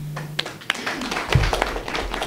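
A small group of people clapping their hands after a speech, in scattered, uneven claps that grow denser through the second half. A low thump about two-thirds of the way in is the loudest moment.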